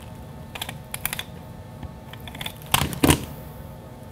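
Small clicks of a hand-held tape-runner adhesive dispenser being pressed and drawn along a ribbon end on a cutting mat, then two louder knocks close together near the end as it is put down.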